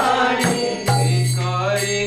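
A man singing a Bengali Vaishnava bhajan, accompanying himself on a two-headed mridanga (khol) drum. A deep resonant bass stroke of the drum rings out about a second in and is held under the voice.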